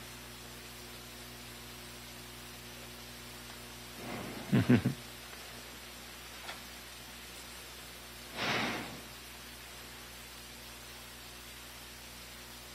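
Steady hiss of a live sound feed, broken by two or three quick thumps of a handled microphone about four and a half seconds in, a faint click, and a short rustle on the microphone near eight and a half seconds.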